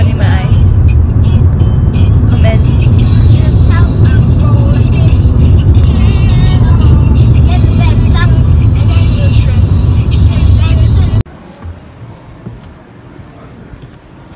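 Loud, steady road and engine rumble heard inside a moving car's cabin, which cuts off suddenly about three seconds before the end.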